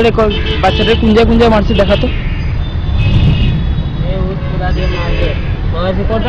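Street traffic making a steady low rumble, with voices talking over it.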